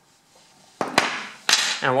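A metal lock cylinder and small parts set down on a wooden tabletop, making short sharp knocks about a second in and again half a second later.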